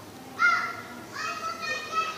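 A high-pitched child's voice calling out twice in the background: a short call about half a second in, then a longer one from about a second in.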